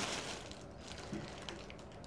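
A quiet pause in a small room with a few faint, soft handling rustles and clicks.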